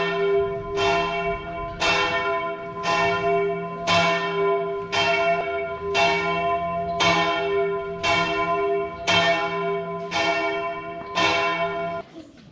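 A large bronze church bell in the belfry tolling, struck about once a second for about a dozen strokes at the same pitch, each stroke ringing on into the next; the strokes stop near the end.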